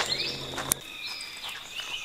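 Outdoor woodland ambience: a steady high insect drone with faint thin bird calls, broken by a sharp click about three quarters of a second in where the background sound cuts.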